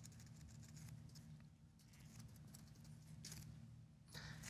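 Near silence: a low steady room hum with a few faint computer keyboard clicks, including a short cluster near the end.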